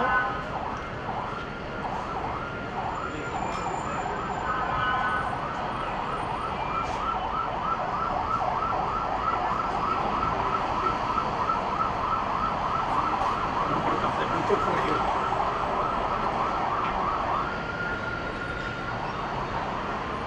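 Emergency vehicle siren in a fast yelp, its pitch rising and falling about three times a second, switching to one steady high tone near the end before it cuts off.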